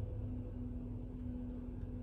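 A steady low-pitched hum, one held tone with a short break about half a second in, over a constant low room rumble.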